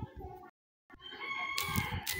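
The sound cuts out to dead silence for a moment, then a long animal call with a steady held pitch comes in.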